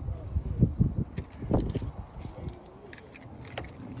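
Keys jangling in hand with light clicks and knocks of handling, the sharpest about a second and a half in and another near the end.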